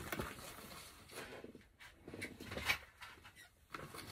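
A few faint clicks and light taps, scattered through a quiet room.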